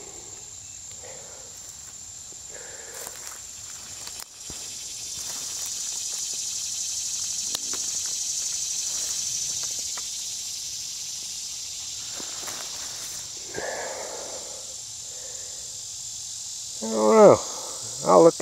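Insects singing in a steady, high-pitched chorus that swells louder in the middle and then eases back.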